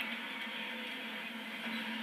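Steady hiss-like noise with a low hum, from a television playing in the room, with no speech or music in it.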